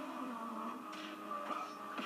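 Background music with slowly shifting held notes, heard faintly from a TV playing in a small room.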